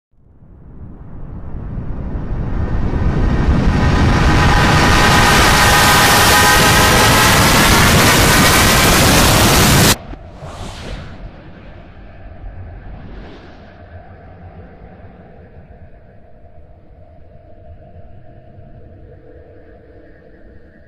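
Logo soundtrack played backwards. A rushing noise with faint whistling tones swells up over several seconds to a loud, steady rush, then cuts off abruptly about halfway through. Two short whooshes and a quiet held chord follow.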